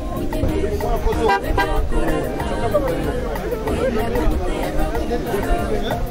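Crowd of people talking over each other, with background music.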